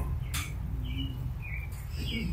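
Birds chirping several short times over a low steady hum, with a brief click about a third of a second in.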